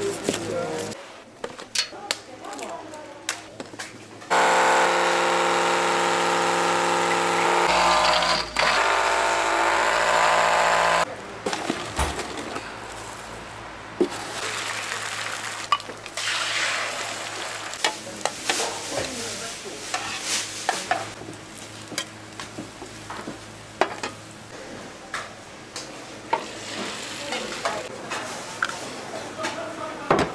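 Kitchen handling clicks, then a loud steady machine whine for about seven seconds, then egg batter sizzling in a hot square pan, with utensil taps and scrapes.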